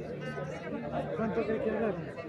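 Several people talking at once in the background, indistinct chatter with no words that stand out.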